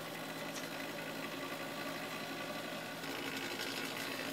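Hot-air desoldering station running steadily, its blower sending hot air onto a chip on a hard-drive circuit board to melt the solder under it.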